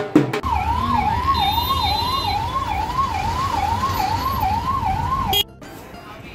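Electronic siren in a fast up-and-down yelp, about two sweeps a second, over a low hum; it starts suddenly about half a second in and cuts off abruptly near the end. Drum strokes are heard in the first moment before it.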